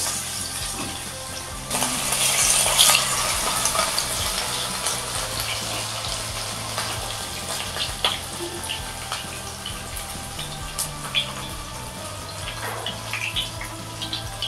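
Marinated rohu fish pieces sizzling in hot mustard oil in a pan. The sizzle surges about two seconds in, then slowly eases into steady frying with scattered pops and crackles.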